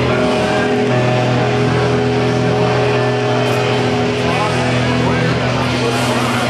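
Amplified electric guitar and bass holding droning, sustained notes through the stage amps, with crowd chatter in the hall.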